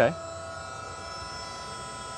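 New Holland T4 75 hp electric tractor running with its electrically driven hydraulic pump on at low speed: a steady whine of several held tones, with no rise in pitch yet.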